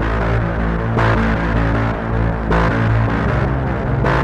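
Dark, droning background music: a low steady hum with a pulsing swell about every one and a half seconds.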